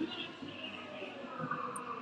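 Faint background ambience of a crowded exhibition hall: distant voices with faint music.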